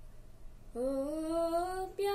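A boy singing unaccompanied: a short breath pause, then about three quarters of a second in one long note that glides slowly upward in pitch, with no clear words.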